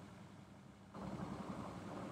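A faint steady low hum with light noise above it, setting in about a second into the pause.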